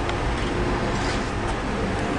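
Air-cooled twin-cylinder engine on a test bench idling steadily through bare exhaust headers.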